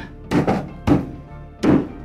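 PVC pipes of a hydroponic tower frame being pressed and knocked into their plastic fittings: four sharp thunks, the second a quick double, over background music.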